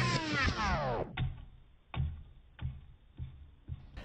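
A downward-sliding slow-motion sound effect, then the slowed-down replay of a rubbery, shell-less egg (its shell dissolved in vinegar) bouncing on a plate: about five soft knocks that come closer together as it settles.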